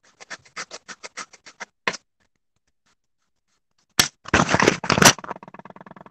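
Colored pencil scribbling back and forth on paper, a rapid run of short scratchy strokes heard over a video call. After a pause comes a louder, rougher scraping burst about four seconds in.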